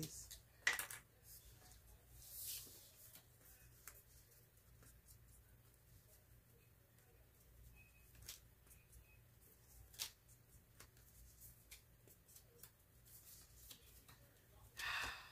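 Near silence with faint handling of a stack of small paper tiles being marked with a felt-tip marker: scattered soft clicks and brief rustles over a low steady hum.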